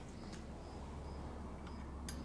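Quiet workshop room tone: a steady low hum with a couple of faint light clicks, one shortly after the start and one near the end.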